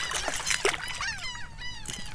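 A hooked speckled trout splashing at the water's surface as it is brought in, with birds calling in short, falling chirps.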